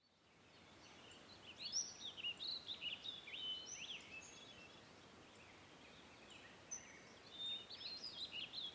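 Several songbirds chirping and whistling over a faint outdoor background that fades in from silence. The calls come thickest about two to four seconds in and again near the end.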